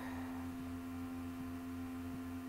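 A steady low electrical hum, one unchanging drone with a few fixed tones in it, left on the recording between the narrator's sentences.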